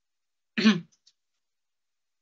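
A man clearing his throat once, a short rasping sound about half a second in, followed by two faint clicks.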